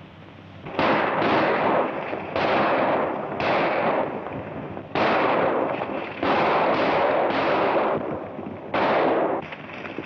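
A volley of gunshots, about ten in all, starting about a second in and coming every half second to second and a half. Each shot has a long echoing tail.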